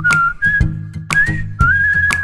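Background music: a whistled melody of a few held, sliding notes over a low accompaniment and a regular beat of about two strikes a second.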